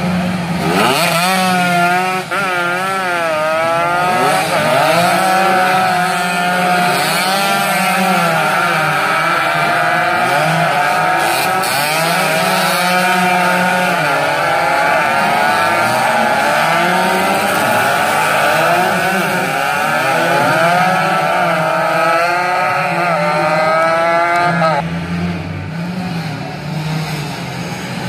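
Several two-stroke underbone racing motorcycles at high revs, their overlapping whines rising and falling with throttle and gear changes as they pass. The engine sound drops away sharply about 25 seconds in.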